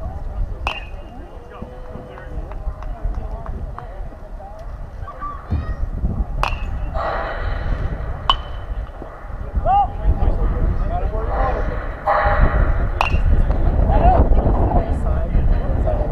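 Baseball game sounds: scattered shouts and calls from players and spectators over wind rumbling on the microphone, which grows stronger in the second half, with several sharp cracks of ball on bat or glove, a couple of them ringing briefly.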